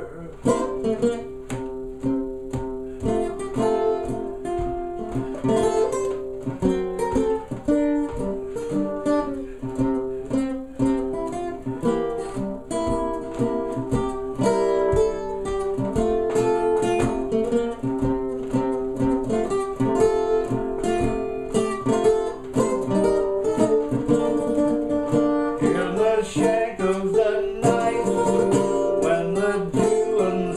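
Custom OME tenor banjo with a 12-inch head and 17-fret neck played solo: a continuous instrumental chorus of rapidly strummed chords carrying the melody.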